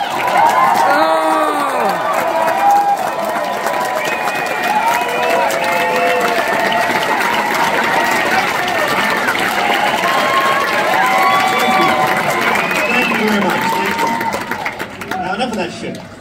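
Large theatre audience cheering and shouting, with applause, dying down near the end.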